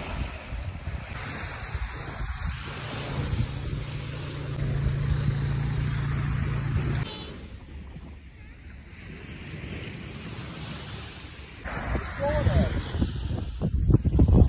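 Ocean surf washing in, with wind rumbling on the microphone. It drops quieter for a few seconds midway and grows louder again near the end, where short voices come in.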